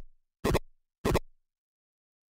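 Short percussive electronic sample triggered from an Ableton Live Drum Rack, heard as three sharp, quickly fading hits about 0.6 s apart, with dead digital silence between them.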